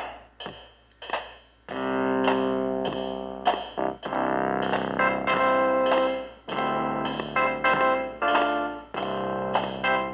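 An Artiphon Orba plays back its looped drum and bass pattern. From about two seconds in, sustained synth chords are tapped in on top, the chord changing every second or two over the drum clicks.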